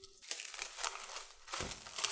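Plastic cling wrap crinkling and crackling as it is pulled and stretched over a glass bowl, with a low thump about one and a half seconds in.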